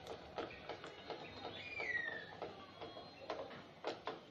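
Screwdriver working the screws of a tubular door latch's metal faceplate: irregular light clicks and scrapes of metal on metal, with a short falling chirp about two seconds in.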